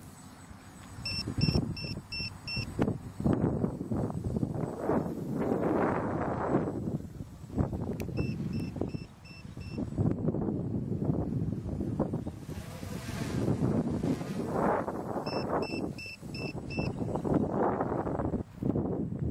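Low-voltage battery alarm on an F330 quadcopter beeping in bursts of five short, high-pitched beeps, repeating about every seven seconds: the battery has reached the set voltage threshold. Underneath, loud gusting wind noise on the microphone.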